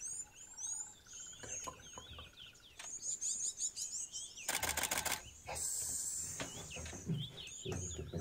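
Small birds chirping throughout. About halfway through, a Canon 5D Mark IV DSLR fires a rapid burst of mirror-and-shutter clicks lasting about a second, its 7-frames-per-second burst shooting a bird as it takes off.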